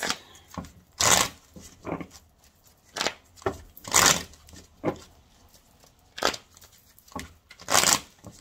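A deck of tarot cards being shuffled by hand: a run of short papery riffles and snaps at uneven intervals, the loudest about a second in, at about four seconds and near the end.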